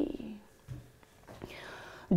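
A woman's unaccompanied sung note ends at the start, followed by a short, quiet pause between phrases with faint breath sounds as she draws breath for the next line.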